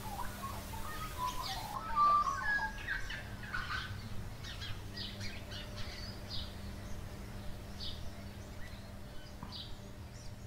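Several birds chirping and calling. Whistled notes come in the first few seconds, then many brief high calls are scattered through the rest, over a faint steady low hum.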